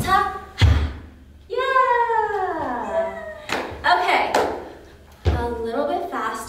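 A woman's voice making wordless vocal sounds, chief among them one long sliding call that falls in pitch, with a thud about half a second in and another near the end, typical of feet stomping on the dance floor.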